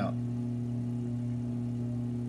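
Electric potter's wheel motor humming steadily as the wheel spins with a pot of wet clay on it, one even low tone with overtones and no change in speed.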